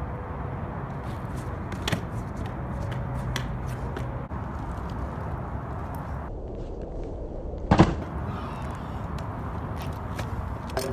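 Pro scooter wheels rolling over asphalt, with a small click about two seconds in and a loud sharp clack near the end as the scooter lands a flatground trick.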